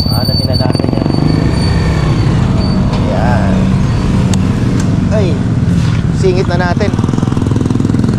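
Motorcycle engine running at a steady pace while riding, a continuous low rumble of rapid firing pulses, with snatches of voices in the middle.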